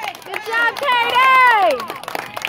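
Spectators shouting and cheering in high voices after a softball catch for the third out, the loudest a long call falling in pitch over the second half, with scattered hand claps.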